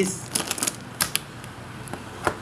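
A quick run of light, sharp clicks in two short clusters, about half a second in and again about a second in.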